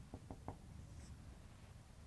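Dry-erase marker writing on a whiteboard: a few faint, short strokes in the first half second.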